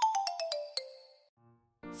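Short eyecatch jingle marking a section change: a quick run of bright, clicky notes stepping down in pitch, fading out within about a second.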